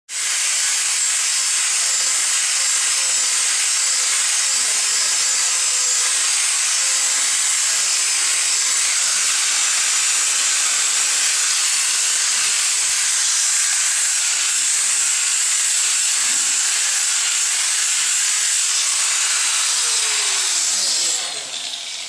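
Angle grinder with a diamond polishing pad running against a tile edge: a loud, steady high hiss. Near the end it cuts out and the motor winds down with a falling whine.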